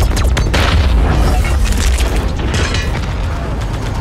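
Movie explosions: loud booms over a continuous deep rumble, with a sharp blast in the first half-second and another a little before the end.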